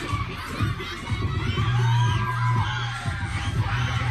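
Bass-heavy dance-battle music with a steady beat, under a packed crowd of young people shouting and cheering.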